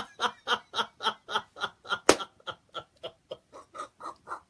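A man laughing in a long run of short, even bursts, about four a second, with one sharper burst about halfway through, the bursts growing fainter near the end.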